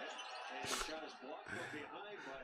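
Basketball bouncing on a hardwood court, two thuds about a second apart, under a commentator's voice from the game broadcast.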